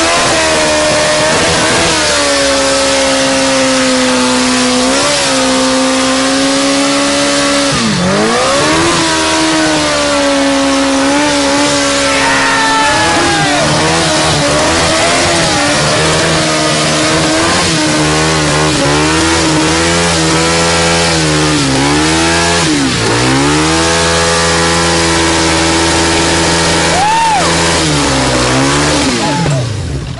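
Sport motorcycle engine held at high revs in a stationary burnout, the rear tyre spinning on asphalt with a steady hiss of tyre noise. The revs dip briefly several times and fall away at the very end.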